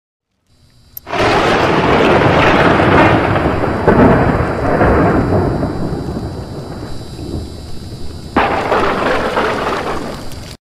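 Logo-intro sound effect: a sharp crack about a second in, then a loud rolling rumble like thunder that slowly fades. A second sudden crash comes near the end.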